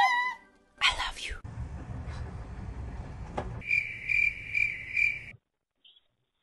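Outdoor background rumble heard through a doorbell camera's microphone, with a short high chirp repeated about twice a second for a second and a half before the sound cuts out.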